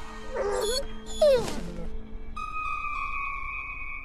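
Cartoon hyenas giving two short whining calls in the first second and a half, the second falling in pitch, over background music holding long steady chords that shift higher midway.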